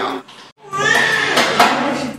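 Newborn baby crying: one long wail that starts just over half a second in, after a brief gap.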